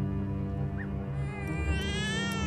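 Soft background music of sustained tones; a little past halfway an infant starts to cry, one long wavering wail that rises in pitch.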